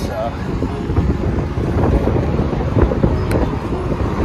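Road traffic going by on a busy street, with wind rumbling on the microphone.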